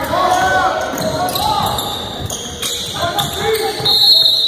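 Basketball game sounds in a reverberant school gym: sneakers squeaking on the hardwood court, the ball bouncing, and players' and spectators' voices echoing around the hall.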